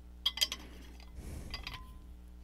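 Faint clinks of a glass water bottle with a stainless steel top and bottom being handled: a few light knocks about a quarter second in and another small cluster near the end.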